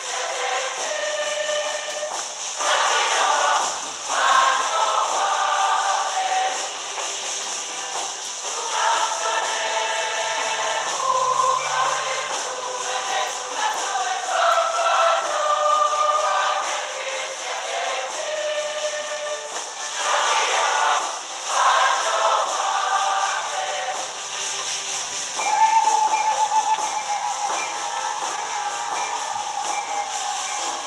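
Church choir singing a hymn, with long held notes.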